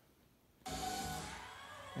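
A television's sound cutting in through a soundbar as the TV comes on: near silence, then a sudden swell of broadcast audio about two-thirds of a second in that fades gradually.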